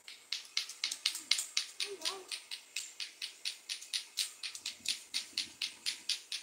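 Lato-lato clacker toy: two hard balls on a string knocking together in a steady run of sharp clacks, about five a second, starting just after the beginning. A short child's voice sound about two seconds in.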